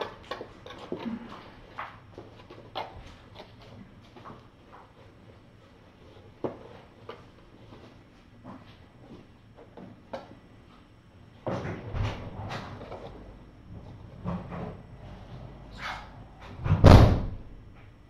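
Kittens playing: scattered small knocks and scuffles as they clamber over and jump off a cardboard play house, with a cluster of louder knocks about two-thirds of the way in and a heavier thump near the end.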